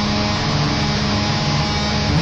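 Crust punk song: heavily distorted electric guitar and bass holding a steady, buzzing chord, without clear drum hits.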